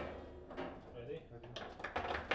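Table football table in play: plastic ball and rod figures knocking and rods clacking, with a run of sharp knocks near the end.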